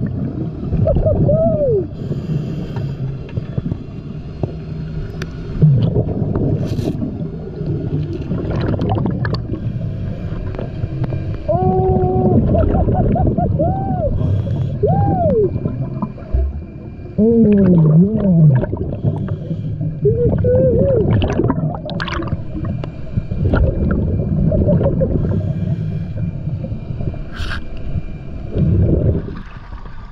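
Muffled underwater sound of scuba diving: regulator breathing and rushing exhaust bubbles, with short rising-and-falling tones around the middle and a few sharp clicks.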